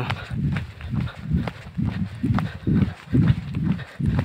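Footsteps walking on an asphalt road: a regular run of low thuds, about two or three a second.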